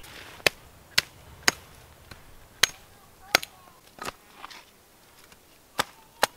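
Hatchet chopping branches off a small conifer trunk: about seven sharp strikes, the first three about half a second apart, then coming more slowly.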